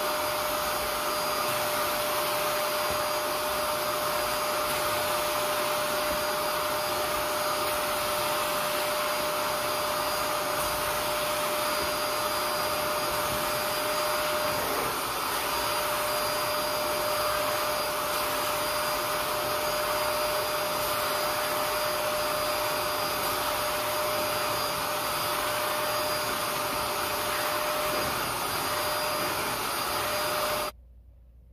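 Portable carpet extractor's suction motor running steadily with an even whine, its hand tool drawn across car floor carpet.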